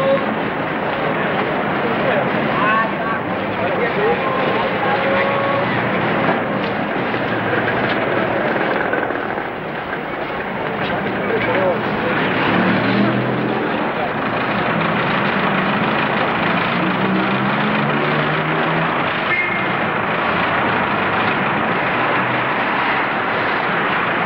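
Dense city street noise: steady traffic with indistinct voices mixed in, and short higher tones now and then.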